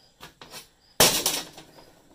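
Hardware being handled on a steel workbench among plastic bags and parts packets: a couple of light clicks, then a short, loud clatter and rustle about a second in.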